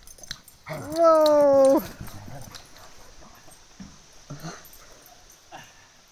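A large dog letting out one loud, drawn-out whining cry about a second in, lasting about a second and sliding slightly down in pitch, in rough play-fighting between two big dogs; a few faint short low sounds follow.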